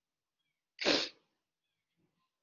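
A person sneezes once, a single short burst about a second in.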